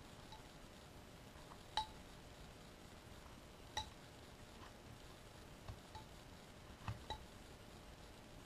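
Faint, sparse clicks of a carving knife cutting small chips from a wooden figure, a few with a short metallic ring from the blade: two distinct cuts about two and four seconds in, then a quicker run of small ones near the end.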